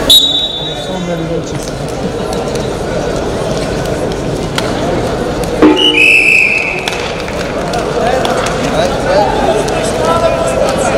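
Steady arena crowd chatter, with a short high whistle blast right at the start and a louder, longer whistle blast about six seconds in.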